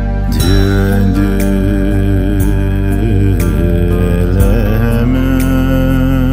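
A slow chanted Buddhist prayer song (choeyang) in Dzongkha. A solo voice enters just after the start, holding long wavering notes over a sustained low accompaniment and a light steady tick about twice a second.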